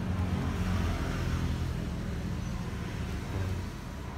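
A steady low rumble, like a motor vehicle's engine running, with a light hiss over it.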